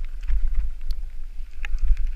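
Wind buffeting the camera microphone as a bicycle rides fast down a dirt forest trail, with scattered sharp clicks and rattles from the tyres and bike over leaves and stones, one louder about three-quarters of the way through.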